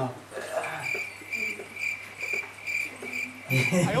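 A cricket chirping steadily, about two high chirps a second, with faint murmuring voices underneath.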